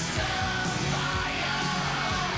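Live hard-rock band playing, electric guitars over drums and bass, with a high sustained lead line in between sung verses.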